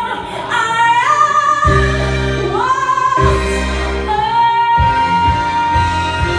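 A song with a female lead vocal singing long held notes that step upward in pitch, ending on one long sustained note, over steady backing music.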